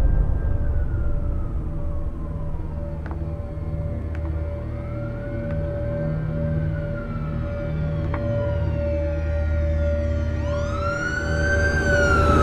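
A siren wailing in slow rises and falls, each sweep lasting several seconds, the last one climbing louder near the end. A low steady drone and a held tone run beneath it.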